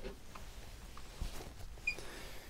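Faint rustling and a few light knocks of a person shifting and turning around on a padded stool.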